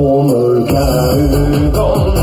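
A man singing held notes into a handheld microphone over a backing track of a Swedish dansband song. The bass and drums drop out at the start and come back in about a second later.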